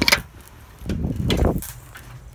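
A couple of sharp knocks, then a sliding glass door rolling along its track about a second in, a low rumble lasting about half a second.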